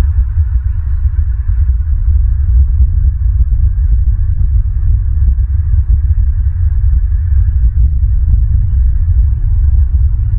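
Wind buffeting an outdoor camera microphone: a loud, uneven low rumble that swells and dips.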